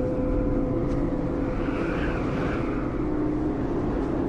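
Strong wind blowing across an exposed high-mountain ridge: a steady low rumble with a held low tone underneath, swelling briefly about halfway through.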